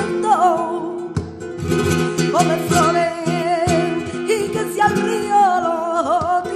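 Female flamenco singer performing a soleá por bulerías, her voice holding and bending ornamented lines, over strummed and plucked flamenco guitar chords.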